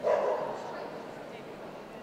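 A dog barks once, a single short loud bark right at the start, over the steady murmur of a crowded show hall.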